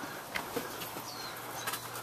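Quiet background ambience: a steady hiss with a few faint clicks and one short high chirp a little under a second in.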